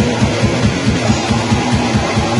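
Black metal band playing: distorted electric guitar over a drum kit with fast, driving drumming.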